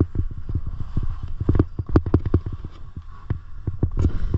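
Skis scraping and chattering over firm, thin snow, with irregular sharp knocks several times a second as they ride over bumps, over a steady low rumble.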